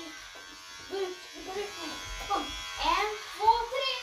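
Electric hair clippers running with a steady buzz as they cut a child's short hair.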